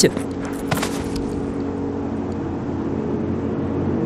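Steady blizzard wind blowing, with faint low held tones underneath and a few faint clicks about a second in.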